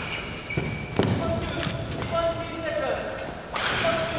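Badminton players moving between rallies: short shoe squeaks on the court mat, two sharp thuds, and voices.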